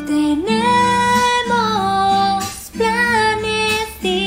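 A song playing: a woman singing long, drawn-out notes that glide up at the start and step down, with soft guitar accompaniment beneath.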